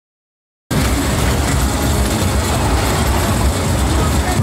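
Fairground roller coaster train rumbling and rattling along its steel track, cutting in abruptly just under a second in and running on steadily and loudly.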